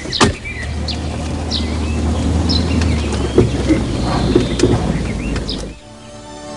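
A car's engine running low and steady as the car moves off, after a single sharp thump just after the start; the sound cuts off suddenly near the end.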